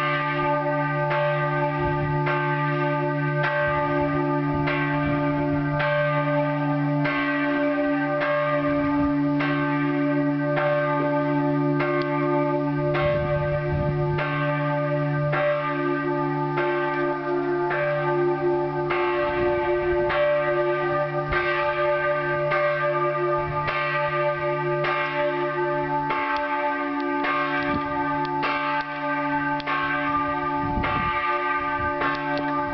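Several church bells of the Maria Pöllauberg pilgrimage church ringing together in a continuous peal, their strikes falling about once a second over a sustained, overlapping hum.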